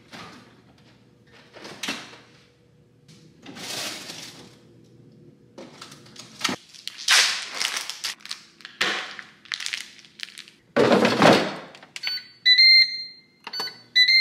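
Kitchen handling sounds: a plastic bag rustling and things being moved and set down, with a louder rush about eleven seconds in. Near the end a Ninja dual-basket air fryer gives a few short, high electronic beeps.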